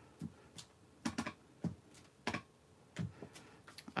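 Clear acrylic stamp block tapped on an ink pad and pressed onto cardstock: a string of light clicks and taps, about eight of them at uneven intervals.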